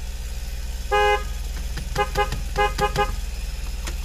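Car horn honked to scare off nearby black bears: one short honk about a second in, then a quick run of about five short toots. The car's engine idles steadily underneath.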